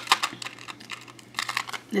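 Small metal rhinestone charms on a cardboard backing card clicking and rattling in quick, light clicks as they are handled and straightened on the card.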